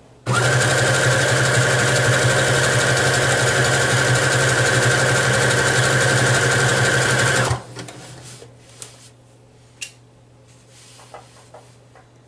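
Brother domestic sewing machine running fast and steady for about seven seconds, sewing a seam at high speed, then stopping abruptly. A few faint clicks follow.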